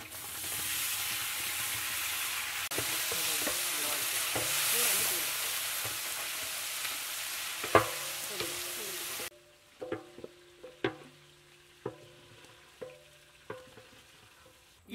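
Shallots, tomatoes and green chillies sizzling loudly in hot oil in a large aluminium cooking pot as they are stirred with a wooden spatula. The sizzling cuts off abruptly about nine seconds in, leaving only a few faint clicks and knocks.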